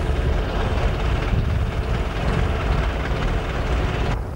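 Outdoor background noise: a steady low rumble with a fainter hiss above it.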